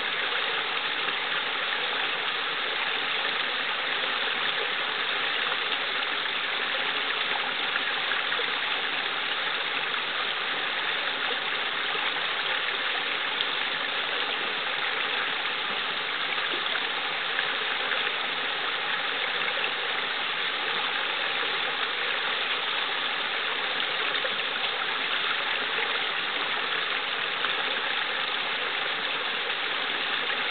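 Small brook running steadily, water spilling over a little rock cascade into a pool.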